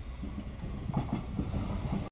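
Electric passenger train pulling in alongside the platform: a low rumble of wheels on the rails with faint, irregular clacks.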